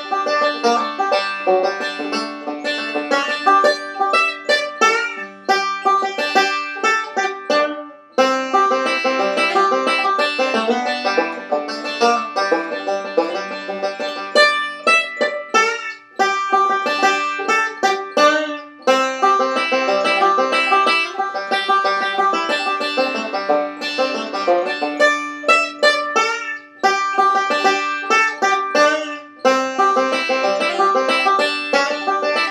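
Solo five-string resonator banjo picked bluegrass-style, a fast tune played at full tempo, with a few brief breaks between phrases.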